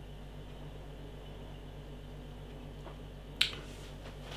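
A man takes a quiet sip of beer from a glass over a low, steady hum. About three and a half seconds in there is one short, sharp mouth click after the swallow.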